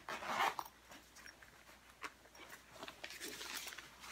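A soft gig bag being unzipped and handled: a short rasp of noise at the start, then faint rustling of the fabric case with a few light clicks, one sharper about halfway.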